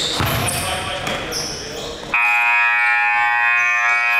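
Gym scoreboard buzzer sounding a loud, steady tone for about two seconds, starting about halfway through as the game clock runs out; before it, a basketball bouncing amid court noise.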